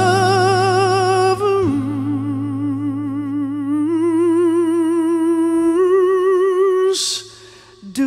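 A woman's voice holding long wordless sung notes with a wide vibrato: a high note first, then a lower one that steps up in pitch twice, over acoustic guitar that fades out early. The notes break off about seven seconds in with a short breath, then it goes quiet.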